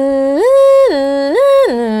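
A voice sings a wordless figure, swinging up and down about an octave between a low and a high held note roughly once a second. It imitates a small part of a song's production.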